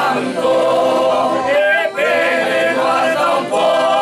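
Several voices, a man's among them, singing an Italian song together without accompaniment.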